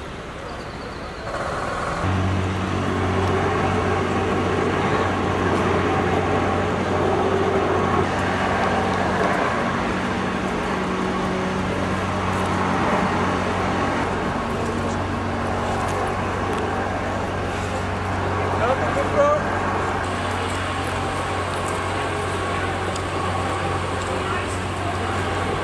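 A steady low drone like an idling vehicle engine, starting about two seconds in, under street noise and people talking. A brief louder, higher sound stands out about three-quarters of the way through.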